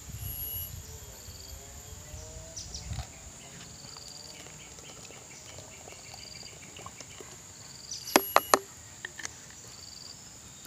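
Bleach poured in a thin stream from a plastic bottle into a bucket of liquid, over a background of chirping birds and insects. About eight seconds in, a quick run of four sharp clicks from the plastic bottle and cap being handled.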